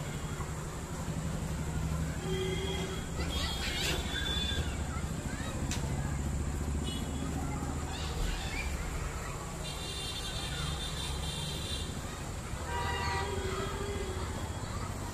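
Distant city traffic: a steady low rumble, with a few brief higher-pitched tones such as horns or calls sounding over it, the clearest near the end.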